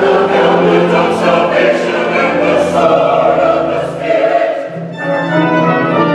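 Large mixed church choir singing an anthem in full voice with brass accompaniment. About five seconds in, the singing eases and the brass section comes to the fore with steady held chords.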